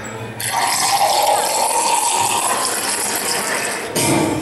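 A loud rushing, gushing noise like water pouring, starting about half a second in and cutting off sharply near the end.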